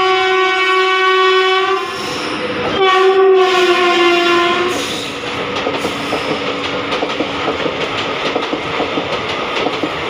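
An express train's locomotive horn sounds two long blasts, the second dropping in pitch as the engine passes. After about five seconds in, the coaches take over, clattering rapidly over the rail joints at speed.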